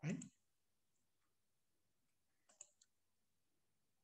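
Near silence after a single spoken word, broken by one short, faint click about two and a half seconds in.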